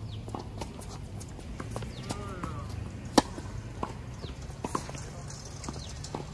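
Tennis rally on a hard court: sharp pops of the ball off racket strings and bounces, irregular and about a second apart, the loudest about three seconds in, with footsteps on the court.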